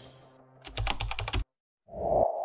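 Typing sound effect: a quick run of about ten keyboard keystrokes lasting under a second, which cuts off suddenly.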